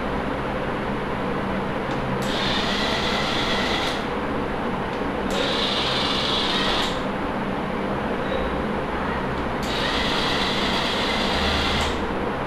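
Small electric motors of a hobby robot vehicle whining in three separate spells of about two seconds each, each starting and stopping abruptly, over a steady low hum and hiss.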